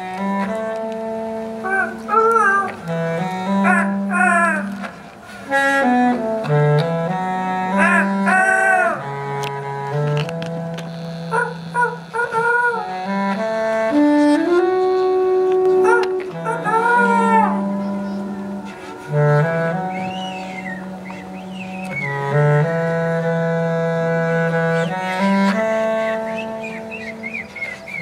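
Sámi joik singing, the voice sliding and wavering in pitch in short phrases, over a slow line of low held bass notes that change every second or two, with a reed wind instrument.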